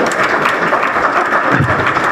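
Audience applauding: many hands clapping together in a steady patter.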